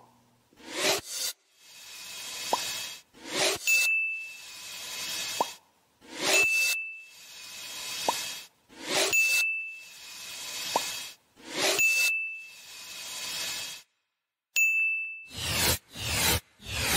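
Slide-animation sound effects: a swelling whoosh ending in a short, high ding, repeated about every three seconds, five dings in all, as checkmarks pop onto a list.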